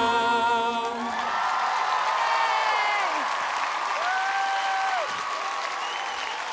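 A male-and-female pop duet's last held sung note and the band's closing chord, ending about a second in, followed by applause with whoops and cheers.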